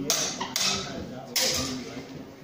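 Longsword trainer blades clashing three times in quick succession, each a sharp metallic strike with a brief ringing tail.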